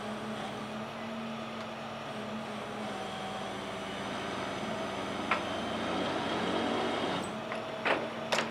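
Steady hum of an idling vehicle engine, with a single sharp click about five seconds in.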